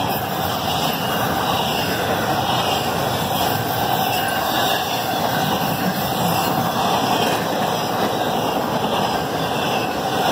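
Double-stack intermodal freight cars rolling past close by: a steady roar of steel wheels on rail, unbroken and even in level.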